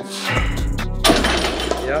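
Loaded barbell racked onto the steel hooks of a power rack, a sudden clank about a second in followed by a short rattle of the bumper plates. Background music runs underneath.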